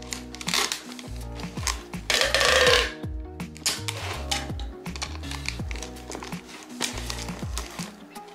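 Background music, with packing tape pulled off a hand-held dispenser onto a cardboard box; the loudest tape pull comes about two seconds in.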